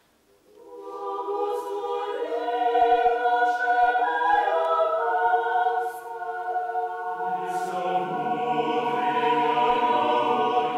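Mixed a cappella choir singing Russian Orthodox liturgical chant. After a brief silence the voices enter about half a second in and swell, and lower men's voices join about seven seconds in, filling out the sound.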